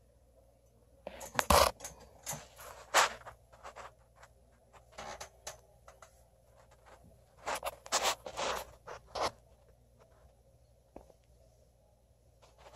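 Handling noise from a phone camera being moved: irregular rubbing and scraping in short bursts, loudest about a second and a half in, at three seconds and around eight seconds, dying away near the end.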